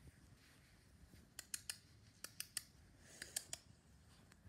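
Faint handling noise: three quick clusters of small sharp clicks, about three clicks each, as plush toys are moved about by hand.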